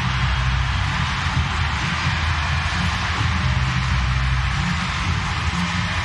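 Steady crowd-like noise, a dense even hiss, over low stadium music with bass notes shifting every second or so. This fits the artificial crowd sound pumped into 2020's empty-ballpark broadcasts after a home run.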